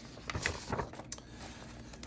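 Paper instruction sheets being handled and shifted, a faint rustling with a few light ticks in the first second or so, quieter after.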